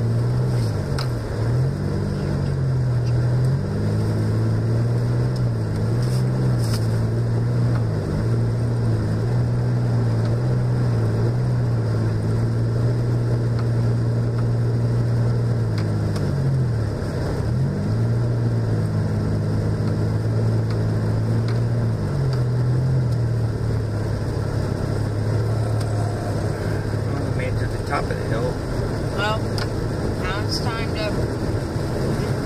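Car engine and tyre noise heard from inside the cabin while driving on a snow-covered road: a steady low engine drone whose pitch dips briefly and recovers several times.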